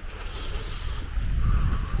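Handling noise on a handheld camera's microphone: a brief rustling rub for about the first second, then a low rumble of wind and handling buffeting the mic, growing louder toward the end.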